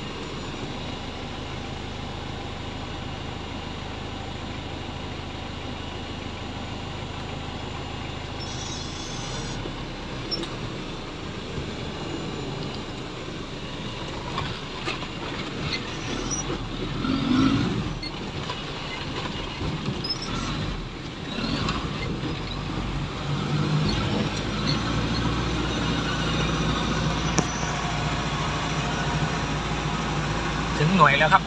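Off-road 4x4's engine running at low speed, heard from inside the cab as it crawls along a rough forest trail, its engine note shifting a couple of times. Knocks and rattles from the body over bumps, with branches brushing the vehicle, come mostly in the middle of the stretch.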